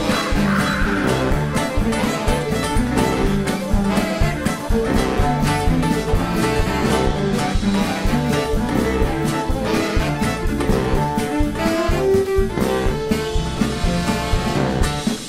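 Live blues band playing an instrumental passage, with fiddle, acoustic guitars, saxophone and trombone over a steady beat.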